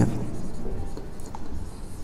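Marker pen writing on a whiteboard, in short irregular strokes.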